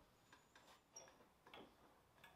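Near silence with a few faint, short ticks spread out over the two seconds.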